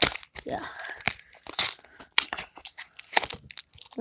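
Foil Pokémon booster-pack wrapper being torn open and crinkled by hand: irregular crackling and tearing throughout.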